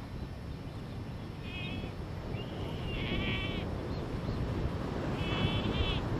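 A Galápagos sea lion pup calling for its mother: about four short, high-pitched calls, the strongest a little past halfway, over a steady low rumble.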